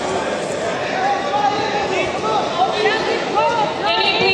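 Crowd of voices talking and calling out at once in a sports hall, overlapping so that no single voice stands clear: spectators and coaches around a grappling match.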